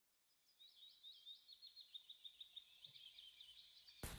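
Faint, quick chirping of a small bird, a short high note repeated several times a second.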